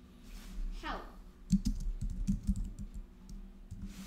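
Typing on a computer keyboard: a run of irregular keystrokes that starts about a second and a half in.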